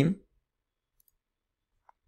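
The last syllable of a man's speech, then near silence (the audio cut to nothing) with at most a tiny faint click just before the end.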